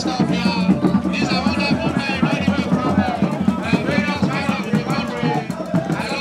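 Live band music: a lead voice singing over a steady drum and percussion groove.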